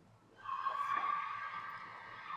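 A steady mechanical whine with a hiss starts about half a second in, most likely the RoGator sprayer's liquid system starting up as the nozzle rinse begins.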